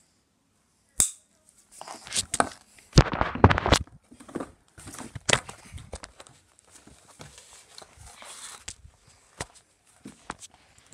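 Handling noise from a phone camera being picked up and moved about: a sharp click about a second in, a cluster of heavier knocks and rubs around three to four seconds, then scattered lighter clicks and bumps.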